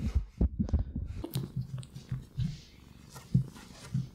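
A ferret right at the microphone, making soft low pulses a few times a second with small clicks in between.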